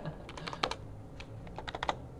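Computer keyboard keys being pressed, a scattering of short clicks in two clusters, as characters are deleted from a terminal command line.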